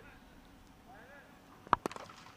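Cricket bat striking the ball: two sharp cracks close together near the end, heard through the broadcast's pitch-side microphone.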